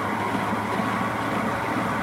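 Electric stand mixer running at a steady speed, its flat beater turning through damp, dyed bicarbonate soda in a stainless steel bowl while the bicarb is being bloomed: an even motor hum.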